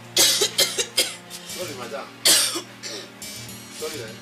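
A woman coughing violently in several harsh fits, with strained vocal sounds between them; the loudest coughs come about a quarter second in and just after two seconds. Background music runs underneath.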